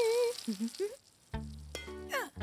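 Cartoon garden hose spraying water, a hiss for about the first second, with a wavering high note over its start and a few short pitched chirps. After a brief quiet gap comes a sharp knock about a second and a half in.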